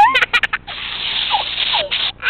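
Silly string aerosol can spraying: a steady hiss lasting about a second, starting a little over half a second in. Before it, at the start, there are children's high squeals and laughter.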